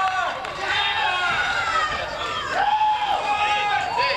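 Indistinct raised voices calling out, with one long, high call about two and a half seconds in.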